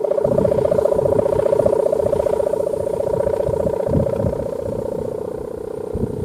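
Kite hummer (sendaren), a bow strung across the top of a flying kite, vibrating in the wind with a steady droning hum that holds one pitch throughout.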